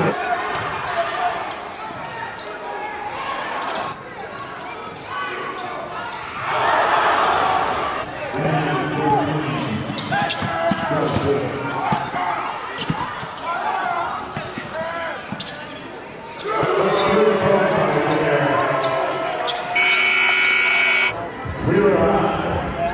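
Live basketball game sound in a large gym: the ball bouncing, short sharp sounds of play, and indistinct voices from players and spectators. Near the end a steady horn tone sounds for about a second and cuts off abruptly, fitting a scoreboard horn.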